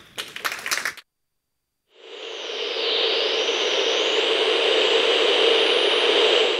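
Audience clapping that is cut off abruptly about a second in. After a second of silence, an outro sound effect swells in: a rushing, jet-like noise with a faint whine sliding up and down on top, holding steady to the end.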